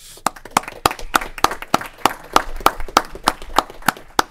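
A few people clapping: distinct, evenly paced hand claps, about three or four a second, in applause for a departing staff member.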